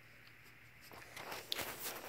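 Faint rustling and scuffing starts about halfway through, with a few sharp clicks.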